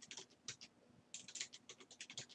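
Faint computer keyboard typing: a few keystrokes near the start, then a quicker run of keystrokes in the second half.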